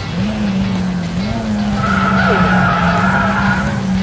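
Honda Civic Type R engine running hard, its pitch dipping and climbing twice in the first second or so. From about halfway a tyre squeal comes in for nearly two seconds as the car is pushed through a corner, the rear refusing to break loose into a slide.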